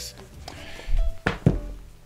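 Two dull thumps about a second and a half in, a quarter-second apart, as a paperback book is put down on a desk, over faint background music holding long notes.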